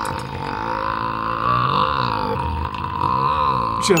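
A man's very long, deep belch, held unbroken with a wavering pitch, that cuts off just before the end.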